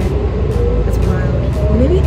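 Steady low rumble of engine and road noise inside a moving city bus, with a voice over it.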